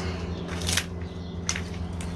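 Two brief rustles, one a little under a second in and one at about a second and a half, from hands working potting soil and plants in a container, over a steady low hum.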